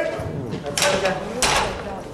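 Loaded barbell set back into the steel bench-press rack uprights: two sharp metal clanks about half a second apart, near the middle.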